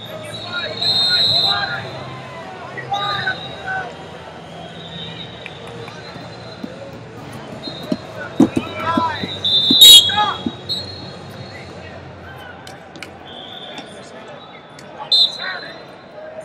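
Referee whistles sound again and again across a busy wrestling hall, over shouting from coaches and the crowd. A scramble brings a few thuds of bodies on the mat about eight to nine seconds in. The loudest whistle, about ten seconds in, stops the action.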